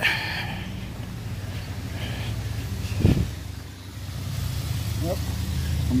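Car traffic on a wet street: a steady low engine and road rumble that grows slowly louder near the end, with a single thump about three seconds in.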